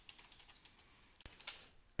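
Faint keystrokes on a computer keyboard, a short burst of scattered clicks as a terminal command is typed and entered.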